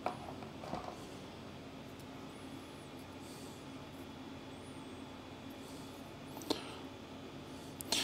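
Quiet room tone with a few light clicks of small rotary-tool accessories and their plastic storage case being handled: a sharp click at the start, a softer one just after, and another about six and a half seconds in.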